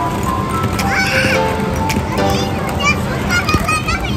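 Background music with held notes, over children's high voices and shouts from a play area.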